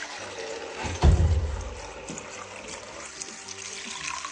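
Fresh milk pouring in a steady stream from a plastic bucket through a plastic strainer into a clay pot, splashing as it fills. A low thump about a second in.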